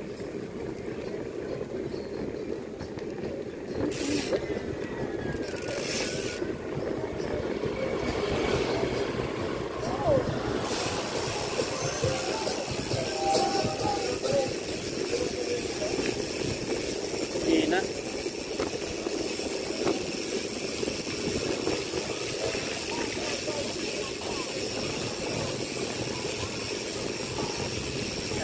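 Wind on the microphone and tyre rumble from a bicycle rolling along a paved road, a steady noise that gains a brighter hiss about ten seconds in. Faint voices sound in the background.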